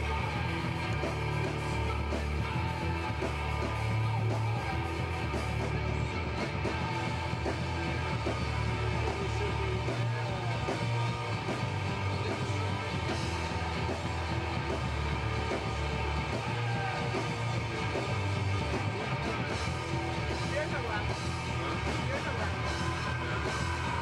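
Noise-rock band playing live: loud electric guitar with shouted vocals over a steady, heavy backing.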